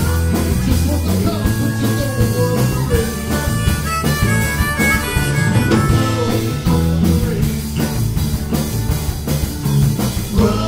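Live blues-rock band: a harmonica, cupped in the hands against a vocal microphone, plays held and bending lead notes over strummed acoustic guitar, bass and drums.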